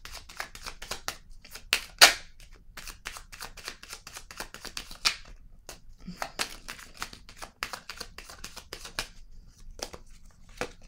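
A deck of oracle cards being shuffled by hand: a steady run of quick card clicks and slaps, the sharpest about two seconds in.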